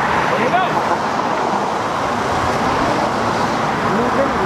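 Road traffic passing on a multi-lane street: a steady rush of car tyre and engine noise.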